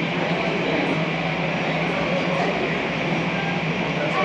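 Steady rumble and hiss of a twin-engine jet airliner taxiing in at low power, heard muffled through terminal glass with a constant low hum under it.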